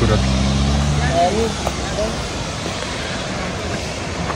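A motor vehicle's low engine hum that fades out about a second in, leaving a steady rushing noise with a few faint voices.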